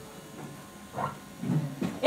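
A short pause between spoken phrases: quiet hall room tone, broken by brief faint voice sounds about a second in and again near the end.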